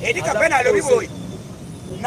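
Speech: a man's voice for about a second, then a short pause.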